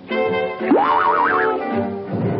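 Cartoon sound effect over an orchestral score: about two-thirds of a second in, a whistle-like tone sweeps quickly up in pitch, then warbles up and down for about a second before stopping.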